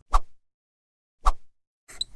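Two short pops, about a second apart, with dead silence between them.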